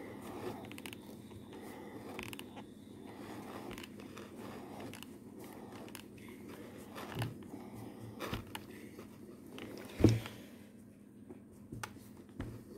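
Faint rustling and scraping of fingers pressing and stretching a steamed crochet motif on a cloth-covered board, with a few soft knocks, the loudest about ten seconds in.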